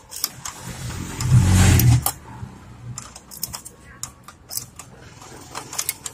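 Scattered small clicks and taps of metal stove fittings being handled as the gas pipe's nipple is worked loose from the burner's ignition unit, with a short, louder low rumble about a second in.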